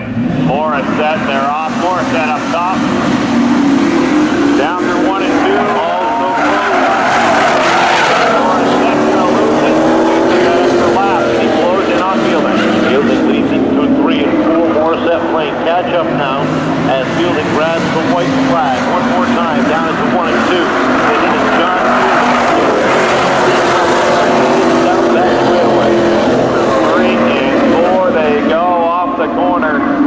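Street cars racing around an oval, engines under hard throttle and tires squealing in long, wavering squeals as they slide through the turns.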